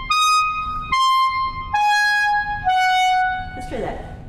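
Clarinet playing a fast passage at slow practice tempo, one long note at a time. Five sustained high notes step up, back down, then fall, and the last is held about a second.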